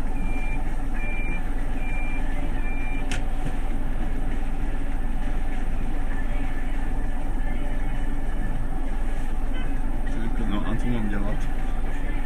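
The engine of a 30-seat bus running steadily, heard from the driver's cab, with a high electronic warning beeper sounding about four times, a little over once a second, in the first three seconds. It stops with a single click.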